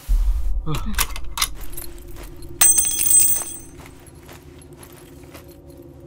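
Suspense film soundtrack: a deep low boom opens, with a brief falling voice-like sound and a few clicks. A bright metallic jingle with a ringing tone comes about two and a half seconds in, and then it settles into a quiet steady drone.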